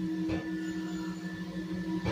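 A steady droning hum made of several held tones that do not change in pitch.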